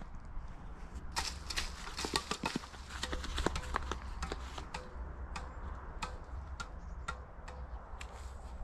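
An apple bouncing repeatedly on the strings of a tennis racket as it is kept up in the air, a run of sharp knocks at about two a second, over a low rumble.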